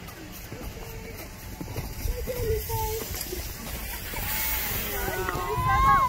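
Indistinct voices of people chatting on the snow, faint at first and louder near the end, with a few low rumbles about two seconds in and again just before the end.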